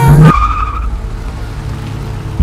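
A car's tyres squeal briefly just after the song breaks off, followed by a steady low car engine and road noise.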